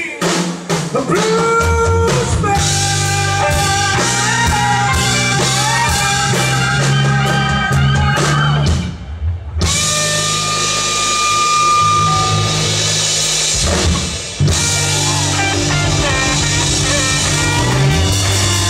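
Live blues-rock band playing loud: drum kit, electric bass and electric guitar. The band stops short twice, briefly about nine seconds in and again about fourteen seconds in, then comes back in.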